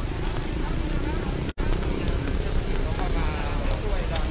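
Steady outdoor street noise from vehicle engines and water on a flooded road, with faint background voices. The sound drops out for an instant about one and a half seconds in.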